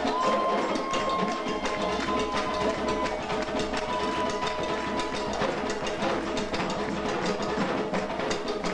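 Haitian Vodou drumming: hand drums under a sharp, clicking, woodblock-like strike pattern in a fast steady rhythm. A high held note sounds over it for about three seconds, and once more briefly a little later.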